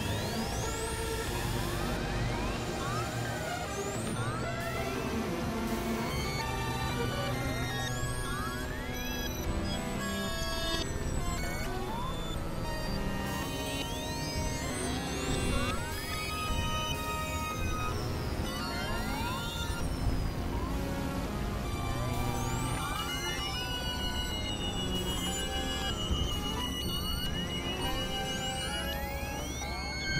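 Experimental electronic synthesizer music: a dense, dissonant bed of held tones over a low drone, crossed every few seconds by pitch sweeps that rise quickly and then glide back down.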